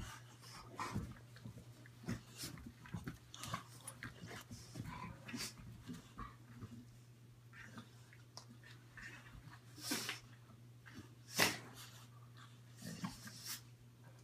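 A dog and a puppy play-wrestling: faint breathing, snuffling and mouthing noises with scattered short scuffles. The two loudest brief sounds come about ten and eleven and a half seconds in.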